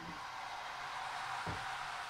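Thin pancake batter sizzling steadily in a hot frying pan, with a soft knock about halfway through.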